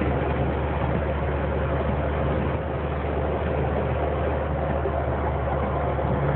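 Steady engine and road noise heard from inside a vehicle's cab while driving on a snowy road, an even low hum that does not change.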